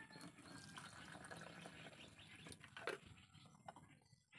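Faint sound of water being poured from a plastic bottle, with a couple of light knocks about two and a half to three seconds in.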